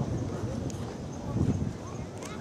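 Wind buffeting the microphone in uneven low gusts, with a louder blast about a second and a half in, over people talking in the background.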